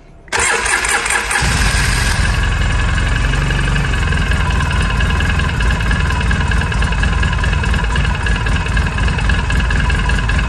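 A Polaris Sportsman 800 EFI ATV's twin-cylinder engine is started. The starter cranks for about a second, then the engine catches and settles into a steady idle. It runs on a freshly replaced fuel filter, with fuel pressure coming up to the specified 39 psi.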